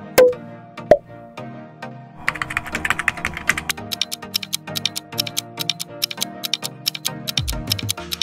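Background music with a keyboard-typing sound effect: a rapid run of clicks starting about two seconds in and running on. Two sharp hits come in the first second.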